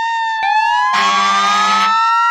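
Sirens wailing: several overlapping tones gliding slowly upward. About a second in, a louder steady low-pitched blast joins them for about a second.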